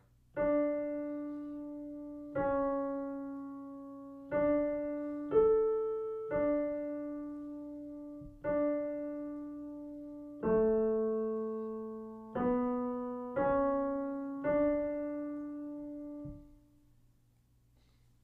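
Solo piano playing a slow ten-note melody in D major, one note at a time in quarter and half notes, each note struck and left to fade, with the last note held longest: the dictation exercise's answer melody.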